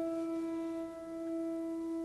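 A single mid-range note on a rebuilt 1940 Sohmer baby grand piano, struck just before, ringing on with clear overtones and slowly fading.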